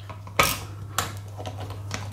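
Ratchet screwdriver clicking as it backs out a security screw on a hard drive's metal case: a few separate sharp clicks, two clear ones in the first second and a fainter one near the end.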